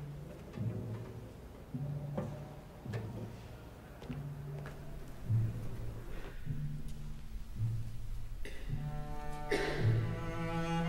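Double bass playing a slow line of low, detached notes, growing fuller and louder near the end.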